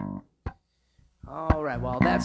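Electric bass guitar: a plucked note at the start rings briefly and is cut short, a soft click follows, then a short pause. A bit past halfway, a loud wavering, pitch-bending melodic line comes in and carries on.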